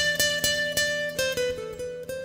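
Guitar music: a quick run of plucked notes, about five a second, settling into longer ringing notes after about a second.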